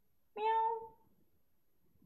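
Domestic cat meowing once, a single short call of about half a second.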